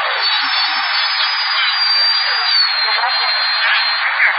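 CB radio receiver hiss during band propagation, with a thin high whistle that dips slightly lower past the middle and faint broken fragments of distant voices in the noise.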